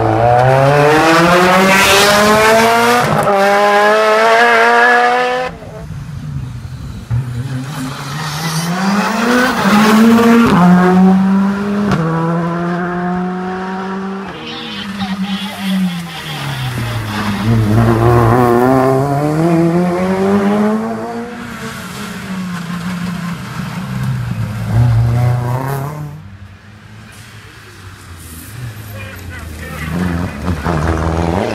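Rally car engines at full throttle as the cars pass on a wet road. The first climbs steeply in pitch and cuts off abruptly about five seconds in. Others then rise and fall through gear changes and braking, with a quieter lull shortly before the end, when the next car comes up.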